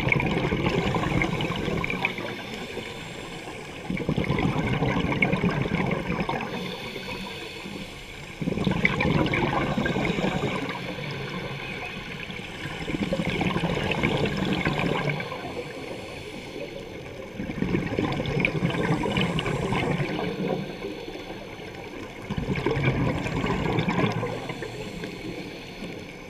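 Scuba diver breathing underwater through a regulator: a rush of exhaled bubbles lasting two to three seconds, six times, about every four to five seconds, with quieter stretches between.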